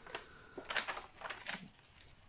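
Paper protective cover over a diamond-painting canvas's adhesive rustling and crinkling under the hand, in a few short, quiet crackles.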